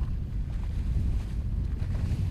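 Motorboat engines running on open water, a steady low rumble mixed with wind buffeting the microphone.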